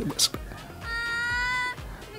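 A high-pitched, drawn-out whine, slightly rising and under a second long, from the variety-show soundtrack, with background music under it.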